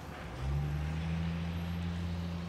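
A motor vehicle's engine running with a steady low hum that comes in about half a second in, over faint street noise.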